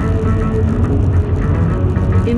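Music playing on the car radio, heard inside the moving car's cabin over steady low road and engine noise.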